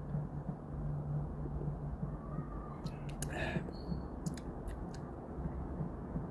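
Gulps and swallows of fizzy beer drunk from a glass, with a few small clicks around the middle and a faint steady low hum underneath.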